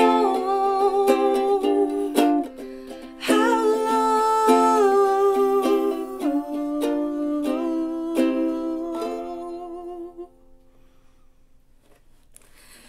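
Ukulele closing a song: chords struck about every three seconds and left to ring, with a wordless vocal note wavering over them. The playing dies away about ten seconds in.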